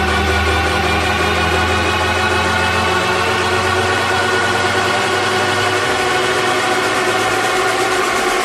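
Beatless breakdown of an electronic dance track: a held synth chord over a deep steady bass drone. The drone drops out about six seconds in.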